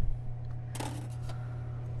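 Food-prep handling sounds at a kitchen counter: a low thump, then a brief sharp rustle or clatter a little under a second in, with a few light ticks, over a steady low hum.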